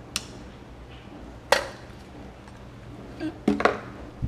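Two sharp clicks of small plastic gear and cord being handled, a light one at the start and a louder one about a second and a half in, over a faint low hum.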